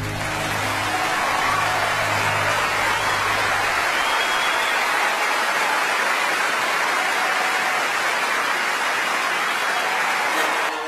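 A large concert audience applauding steadily. The song's final low note fades out under the clapping over the first few seconds.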